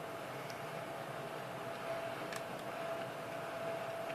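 Quiet room tone: a steady hiss with a thin, steady whine running through it and a couple of faint ticks.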